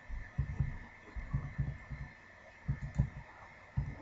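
Faint clicks and low thuds from handling the computer mouse on the desk, in small irregular clusters, over a faint steady hum.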